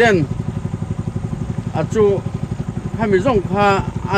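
Small boat engine running steadily with a fast, even chugging beat.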